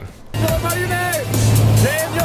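Steady low drone of a small skydiving plane's engine heard inside the cabin, starting suddenly about a third of a second in, with a man's raised voice over it.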